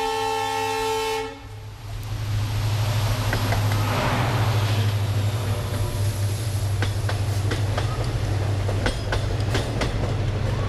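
An Indian passenger train's horn blows a long multi-tone blast that cuts off about a second in. Then the train passes close by with a loud rumble and a low drone, and from about seven seconds its wheels clack over the rail joints as the coaches go by.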